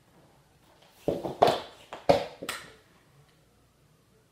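A quick run of about five loud knocks or bangs starting about a second in and ending within two seconds, the second and fourth the loudest.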